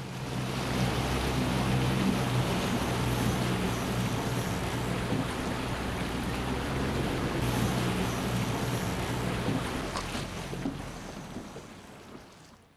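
Wind and water on open lake water around sailing dinghies, a steady rushing with wind noise on the microphone. It fades out over the last two seconds.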